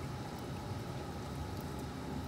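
Steady low hum and water noise from aquarium pumps and water circulation, with no distinct knocks or clicks.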